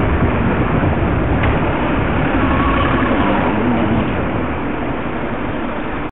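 Steady rush of street traffic and wind noise on a cyclist's helmet-camera microphone while riding, heavy in low rumble, with a lorry's engine running just ahead. A faint whine comes in briefly around the middle.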